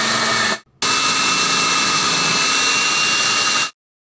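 Electric food processor's motor running at high speed, chopping carrots. It runs in two stretches, a short stop just under a second in, then about three more seconds before cutting off suddenly.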